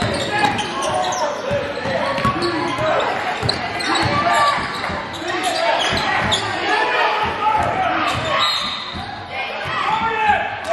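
A basketball being dribbled on a hardwood gym floor, bouncing repeatedly, with players' and spectators' voices echoing around the gym.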